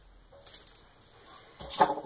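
Quiet handling of curling ribbon and plastic ribbon spools on a countertop: a few faint small sounds about half a second in, and a short louder knock or rustle near the end as a spool is picked up.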